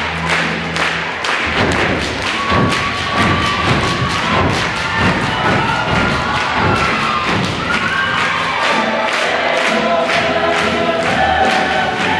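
A large mixed-voice show choir sings with a live show band behind a steady drum beat, holding long sung notes.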